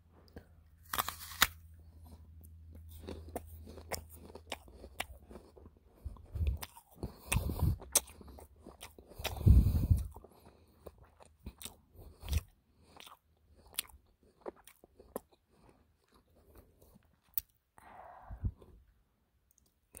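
Close-miked mouth biting and chewing a raw apple: sloppy, wet chewing with many sharp crunches, the loudest bite about halfway through.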